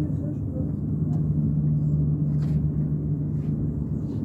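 Aerial cable car cabin moving along its cable: a steady low rumble with a deep hum that grows stronger through the middle and eases near the end, with a few faint clicks.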